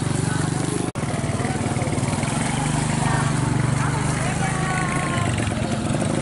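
Small motorcycle engine running steadily while pulling a passenger sidecar carriage, heard from aboard. The sound cuts out for an instant about a second in.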